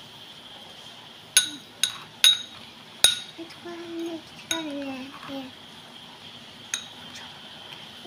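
A metal spoon clinks against a bowl as a thick face-pack paste is stirred. There are about six sharp clinks, a second or so apart, most of them in the first half.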